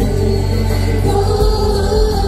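Live pop music: several voices singing a held note in harmony over a band with drums and bass.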